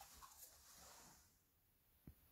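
Near silence: faint room tone in a small room.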